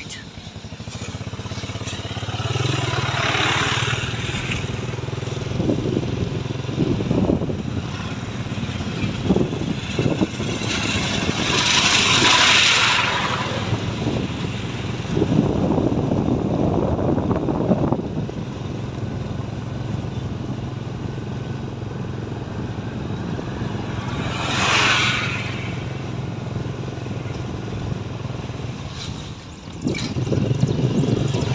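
A vehicle's engine running steadily with a low hum as it drives along a road. Several louder rushes of noise pass over it, the strongest about twelve seconds in and another near twenty-five seconds.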